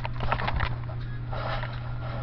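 Faint rustling and handling noise with a few soft clicks, over a steady low hum.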